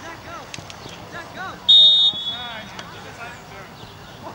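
One short blast of a referee's whistle about two seconds in, a steady high tone, over scattered shouts from players and spectators.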